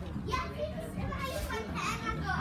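Indistinct children's voices chattering and calling out, several at once, over a low steady hum.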